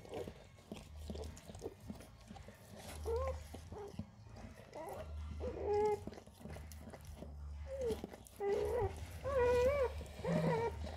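Dog whining: a handful of short, wavering whimpers a few seconds apart, coming closer together near the end, while the mother licks her newborn puppy.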